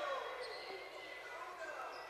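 Faint murmur of spectators and distant voices echoing in an indoor basketball gym during a stoppage in play.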